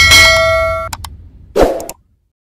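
Intro animation sound effects: a bright metallic ding that rings for about a second, followed by a few sharp clicks and a short low burst near the end.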